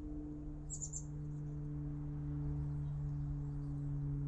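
A steady low hum with a few short, high bird chirps about a second in.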